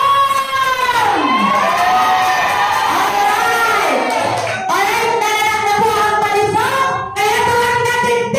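A woman singing loudly into a microphone, with a crowd singing along, cheering and shouting.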